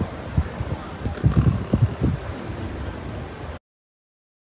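Wind buffeting the microphone in uneven low gusts on an open ship's deck, cutting off suddenly about three and a half seconds in.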